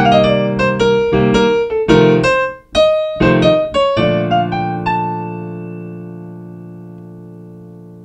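Kawai digital piano playing a jazz improvisation: a right-hand melodic line over held left-hand chords, with a brief break a little under three seconds in. About four seconds in, a final chord is struck and left to ring, slowly fading away.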